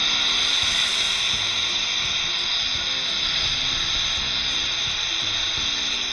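Hawkins pressure cooker whistling: steam jets out under the weight valve in a steady, high-pitched whistle with hiss, the sign that the cooker has come up to full pressure.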